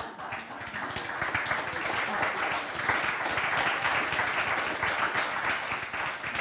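Audience applauding, many hands clapping; it builds over the first couple of seconds and then holds steady.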